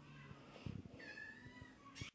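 Young kittens mewing faintly, a few thin high-pitched calls, the clearest one sliding in pitch about a second in.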